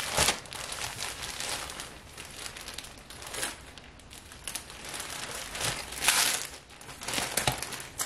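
Thin plastic bag around a folded shirt crinkling as it is handled, in irregular rustles, with the loudest crinkles about three and a half and six seconds in.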